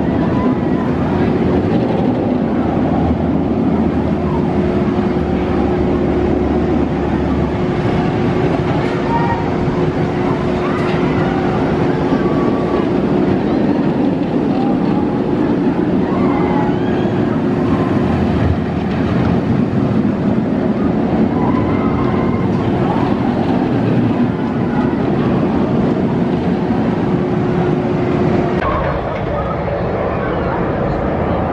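Amusement-park ride ambience: people talking in the background over a steady machine hum that holds one tone and stops about a second and a half before the end.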